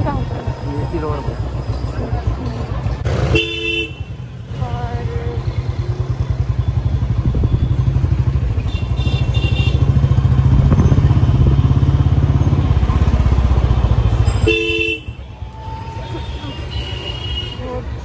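Motorcycle engine running with a steady low pulsing beat while riding through traffic, loudest about halfway through, then dropping away after about 15 seconds. A vehicle horn sounds twice, briefly, about 3 seconds in and again near 15 seconds.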